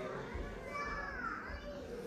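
A child's voice, faint, rising and falling in pitch for about a second near the middle, over low room murmur.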